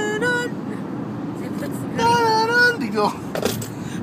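Steady low rumble of engine and tyres heard inside a car's cabin while driving at highway speed. A high-pitched voice cuts in briefly twice.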